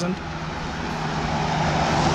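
Pickup truck driving past on the road close by, its tyre and engine noise swelling to a peak near the end as it comes alongside.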